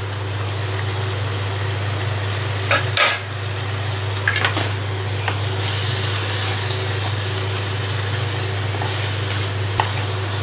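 Chicken and masala frying in a steel kadai, sizzling steadily while a wooden spatula stirs and scrapes through it, with a few sharp knocks of the spatula on the pan about three and four and a half seconds in. A steady low hum runs underneath.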